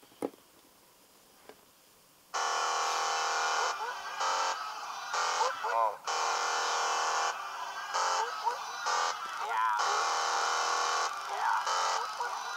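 A rap song playing through a Samsung smartphone's small built-in speaker, thin and without bass. It starts about two seconds in, after a couple of faint taps on the screen.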